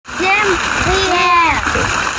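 Water fountain jets splashing steadily into the basin, with a couple of short high-pitched voice sounds over it in the first second and a half.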